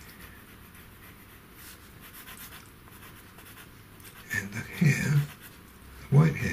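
Faint scratching of a pastel pencil being worked on pastel paper. About four seconds in comes a short, louder murmur of a man's voice, lasting about a second.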